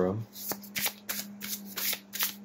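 A tarot deck, the Elemental Power Tarot, being shuffled by hand: a quick run of soft card slaps and riffles, about five a second, over a faint steady hum.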